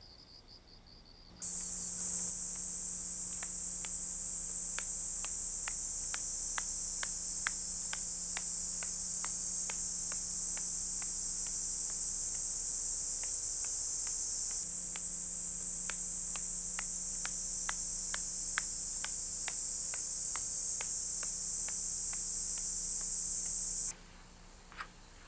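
Faint night ambience, then, from about a second and a half in, a loud steady high-pitched drone of summer cicadas with a low hum beneath. Light clicks come about twice a second through it, in step with footsteps.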